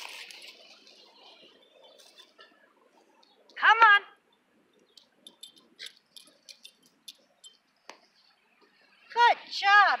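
Swish of a tennis ball flung from a Chuckit launcher, then a short, loud call from a person's voice about four seconds in, followed by scattered light clicks.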